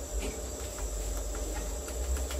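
Faint clicks of the push buttons on a fog machine's control panel as its setting is stepped up, over a steady high-pitched whine and a low hum.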